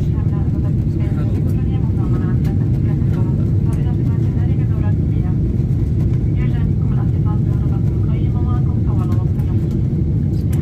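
Airliner cabin in flight: a steady, loud low rumble of engines and airflow, with voices talking quietly over it.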